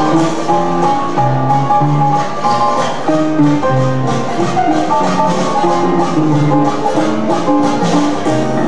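Traditional New Orleans jazz played by the rhythm section alone: a banjo strumming chords over a moving string-bass line with a steady beat, the horns silent.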